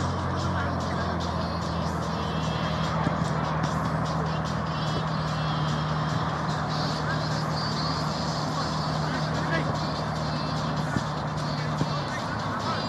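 Outdoor football pitch ambience: players' voices calling across the pitch over a steady low hum, with a few short sharp knocks of the ball being kicked.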